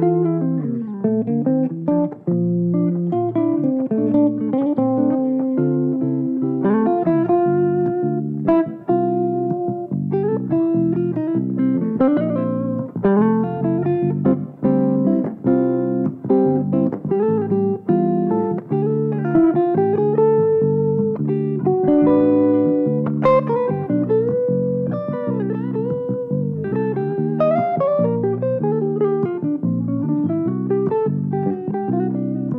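Godin hollow-body electric guitar playing a clean, melodic single-note solo, with bent notes in the middle, over a six-string electric bass line.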